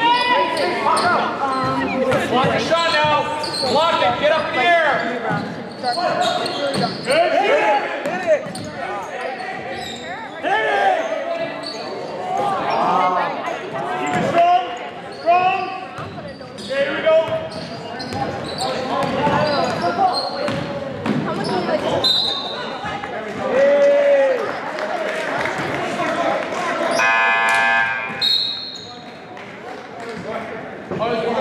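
Indoor basketball game: voices and chatter from people in the gym, with a basketball bouncing on the court, echoing in the large hall.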